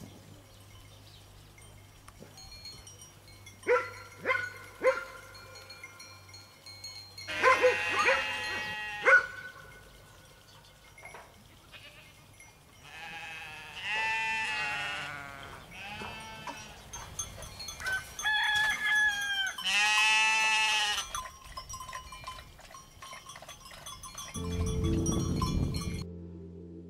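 Goats and sheep bleating: a few short calls about four seconds in, then several long, quavering bleats, the loudest about eight and twenty seconds in.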